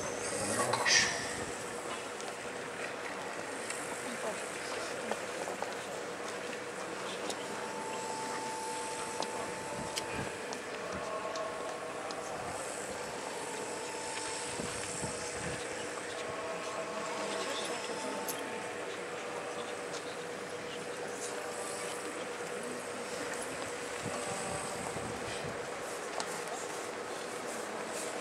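Outdoor crowd ambience: a steady background of street noise with faint, scattered chatter from people standing about. There is a brief louder sound about a second in.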